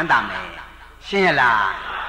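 A monk giving a sermon in Burmese, speaking with a short chuckle in his voice after a brief pause.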